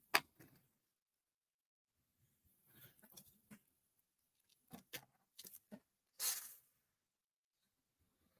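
Faint handling noises at a craft table: scattered light clicks and taps, with a short rustle a little after the sixth second.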